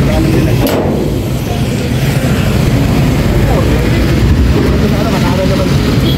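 Motorcycle engine of a motorcycle-and-sidecar tricycle running steadily, heard from inside the sidecar with road and wind noise.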